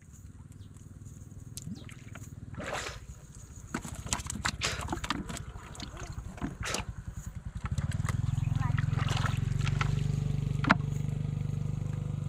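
Water sloshing and splashing close to a small wooden boat, with a man swimming alongside and a gill net being handled. About eight seconds in, the steady low drone of a small engine begins.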